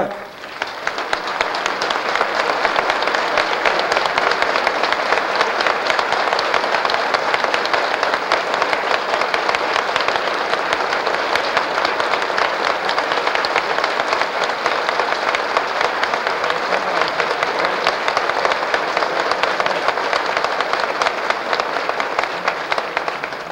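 Sustained applause from a large gathering of people clapping, dense and steady.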